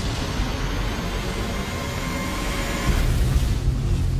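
Intro sound effect: a loud, steady rushing noise over a low rumble, swelling slightly about three seconds in.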